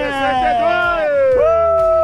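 Men on a beach shouting long, drawn-out cheers: one held shout slides slowly down in pitch, and a second begins about halfway through and is held past the end, over background music with a steady bass.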